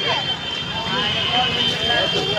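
Busy street-market hubbub: many people talking at once with a steady high-pitched tone underneath.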